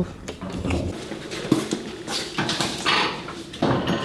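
Scattered light clicks and knocks of the latch and lock on a metal roll-up storage unit door being handled.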